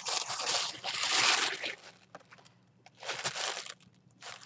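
Tissue paper crinkling and rustling as it is unfolded inside a cardboard box, in two bursts: a longer one over the first two seconds and a shorter one about three seconds in.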